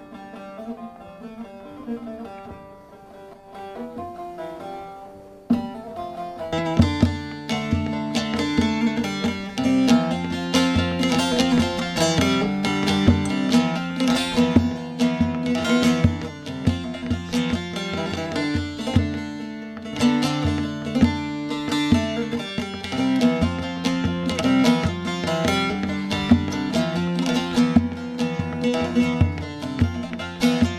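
Bağlama (Turkish long-necked saz) playing an instrumental introduction to a Turkish folk song: soft, sparse plucked notes at first, then from about six seconds in a louder, fuller passage of rapid picked strokes.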